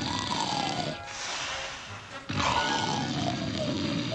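Cartoon sound effect over music: two long rushing, hissing blasts about a second apart, each with a whistle-like tone that slides downward in pitch.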